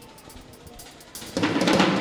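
A church band's drum kit and instruments start a praise chorus about a second and a half in, loud and full after a quiet stretch with a few soft taps.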